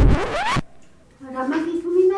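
Comedy sound effect: a quick rising zip-like glide in the first half-second that cuts off sharply, then after a short pause a drawn-out hum that slowly rises in pitch.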